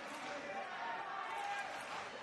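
Indistinct voices of people talking in a large sports hall, over a steady murmur of background chatter.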